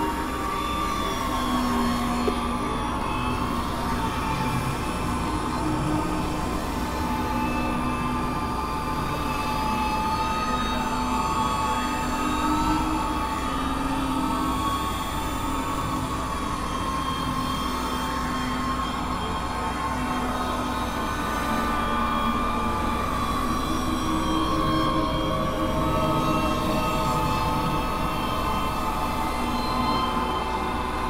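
Experimental drone music: several tracks layered at once into a steady, noisy wash with long held tones and occasional rising-and-falling glides.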